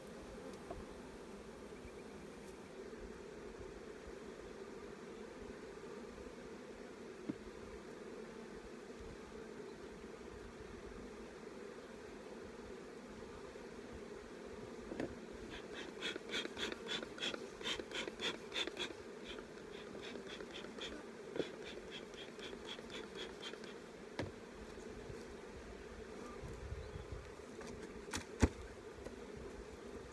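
Honeybees humming steadily around an opened hive. In the middle, a bee smoker's bellows is worked in a quick series of airy puffs, about three a second, for several seconds, with a few light knocks of hive equipment near the end.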